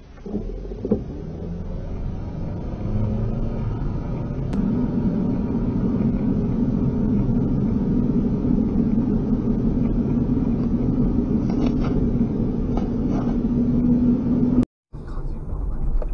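Engine and road noise heard inside a car's cabin, building over the first few seconds as the car gets moving, then holding as a steady low drone. It cuts off abruptly near the end, and a different in-car recording begins.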